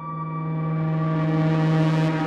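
Behringer ARP 2500 modular synthesizer playing a slow drone texture. A strong, steady low tone enters at the start over sustained higher tones, and a hissing noise layer swells in the upper range as the sound grows a little louder.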